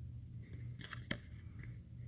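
A thick paper business card being handled and turned over in the fingers, giving a few short, crisp clicks and rustles in the second half.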